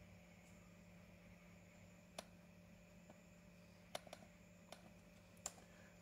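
Near silence with a few faint computer mouse clicks: one about two seconds in, a small cluster around four seconds, and one more near the end.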